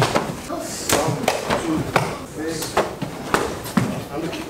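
Karate blows landing on a sparring partner's body and heavy cotton gi: about half a dozen sharp, irregularly spaced smacks over a few seconds.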